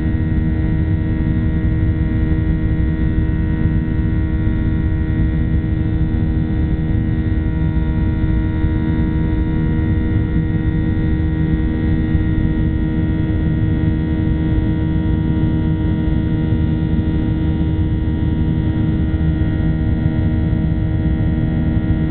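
Cabin noise inside a Boeing 737-800 in its climb: a steady low rumble of airflow and engine, with the CFM56-7B turbofans' drone as an even hum of several fixed tones that does not change.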